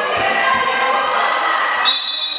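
Several children's voices calling and shouting, echoing in a large sports hall during an indoor football game. Just before the end a whistle starts a long, steady, high blast, the loudest thing here.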